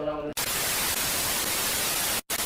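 TV static: a steady hiss of white noise from a glitch transition effect, cutting in abruptly about a third of a second in.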